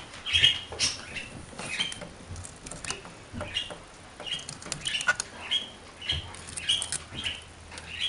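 Small pet parrots (budgie and cockatiels) chirping softly in short, high notes about every half second, with scattered light clicks.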